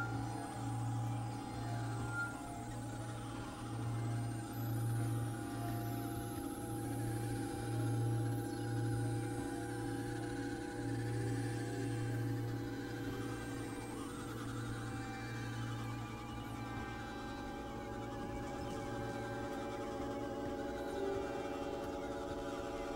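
Experimental electronic drone music: layered steady synthesizer tones over a low tone that pulses at an uneven rhythm and fades out near the end.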